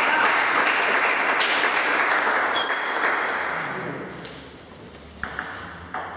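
Spectators applauding after the point, dying away over a few seconds. Near the end a table tennis ball makes three quick, sharp pings as it is bounced before the serve.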